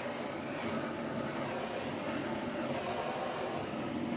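Handheld gas torch burning with a steady hiss, played over a freshly poured acrylic painting to bring cells up through the wet paint.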